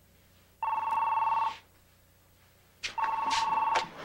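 Desk telephone ringing twice, each ring a trilling two-note tone lasting about a second, with a short pause between them.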